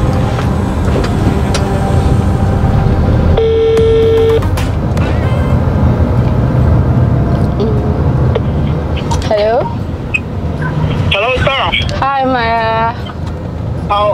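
Steady road rumble inside a moving car's cabin. A few seconds in, a phone on speaker gives one ringing tone lasting about a second, and voices start near the end.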